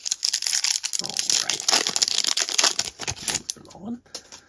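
A Topps Stadium Club card pack's plastic wrapper being torn open and crinkled in the hands: a dense crackling of many small clicks lasting about three seconds.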